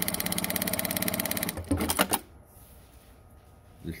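Juki DDL-9000C industrial single-needle lockstitch sewing machine stitching through heavy fabric at a fast, even stitch rhythm. It stops about one and a half seconds in with a few sharp mechanical clacks.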